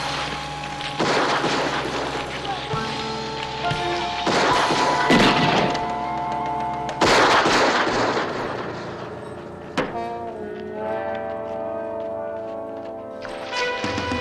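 Several rifle shots, each with a long echoing tail, crack out at uneven gaps of one to three seconds over dramatic music with long held notes. The shooting stops about ten seconds in and the music carries on.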